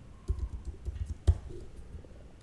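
Computer keyboard typing: an irregular run of keystrokes, one louder than the rest, dying away shortly before the end.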